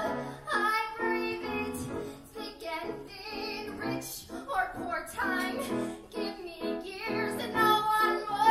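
A woman singing a musical-theatre song with piano accompaniment, holding some long notes with vibrato.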